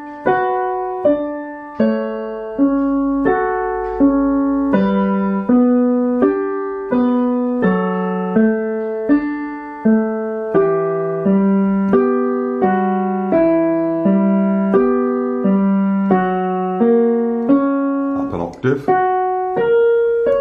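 Digital piano played hands together at a slow, steady pace: broken chords in the left hand under a simple melody, a new note about every three quarters of a second, each one ringing and fading until the next.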